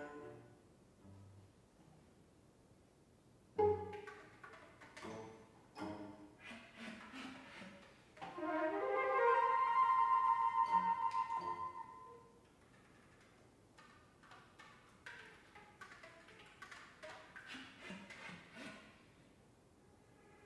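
Contemporary chamber music for flute, B♭ clarinet, piano, violin and cello, played live. It opens hushed, with a sudden loud accent about three and a half seconds in and then scattered short notes. A louder stretch with rising glides and a held note follows near the middle, then the music thins back to sparse short notes.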